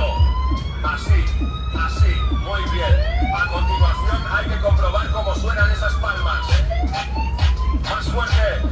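Dance music with a heavy kick drum about once a second, played loud over a fairground ride's sound system. A police siren effect wails over it in repeated rising and falling sweeps.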